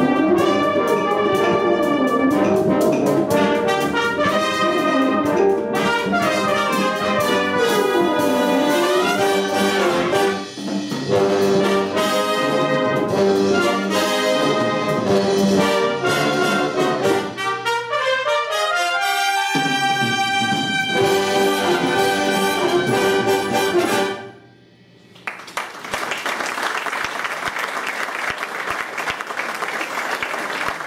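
Brass band playing the closing bars of a Latin American-style number, ending about 24 seconds in. After a short pause, the audience applauds.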